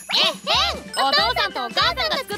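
A girl's voice exclaiming in excited amazement, rising and falling, over light background music with a tinkling chime effect.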